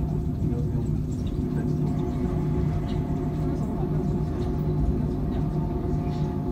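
Inside a Mitsubishi Crystal Mover people-mover car running along its guideway: a steady low rumble from the rubber-tyred running gear, with an even hum of several steady tones from the drive.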